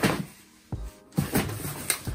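A cardboard shipping carton being handled, with a sudden dull knock about three-quarters of a second in. After it comes a short stretch of music.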